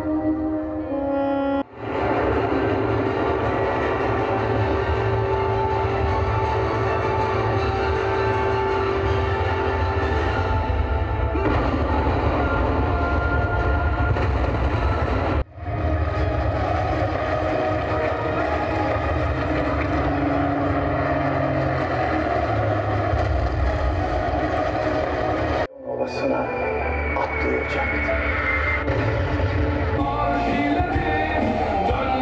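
Loud, dense music from a live stage show, with held tones and a heavy low end. It breaks off suddenly three times and starts again, about 2, 15 and 26 seconds in.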